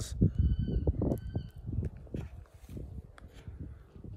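Irregular low thumps and rumble of wind and handling on a phone microphone as it is moved about. Two short, thin whistled bird calls sound in the first second and a half.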